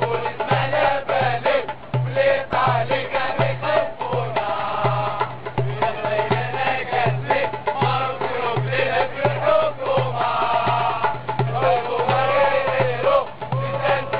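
Football ultras supporters' chant: a group of voices singing in unison over a steady, repeating bass-drum beat.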